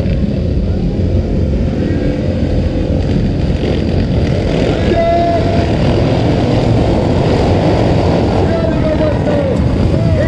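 A pack of dirt-track racing motorcycles running loudly at the start of a race, the engines revving and then pulling away down the dirt straight, with voices over them.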